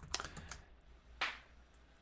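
Computer keyboard typing: a few scattered, faint keystrokes.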